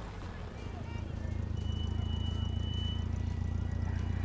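Van engine running as it drives, heard from inside the cabin as a steady low rumble that grows a little louder about a second in. A thin high whine sounds briefly in the middle.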